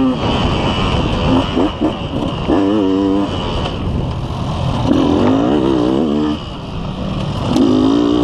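Dirt bike engine revving in repeated spurts as the rider opens and closes the throttle over rough ground, its pitch climbing and falling. The engine eases off briefly a little after six seconds, then picks up again. Noise from wind and the ride runs underneath.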